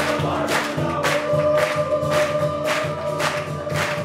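Amateur band playing a song: young men singing together over strummed acoustic guitar, electric guitar, violin, tuba and cajon. A steady beat runs about twice a second, with a long held note from about a second in.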